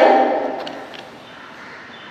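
A woman's speaking voice trails off, leaving quiet room tone with a few faint light clicks of chalk against a blackboard as a circle is drawn.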